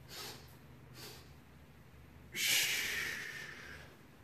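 A man breathing: two short breaths in the first second, then a long forceful exhale about two seconds in that fades away over a second and a half.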